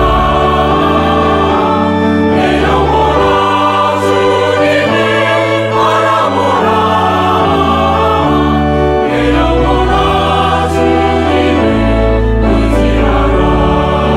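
Mixed choir of men's and women's voices singing a slow hymn in Korean in held chords. Beneath them, an accompaniment sustains long, deep bass notes.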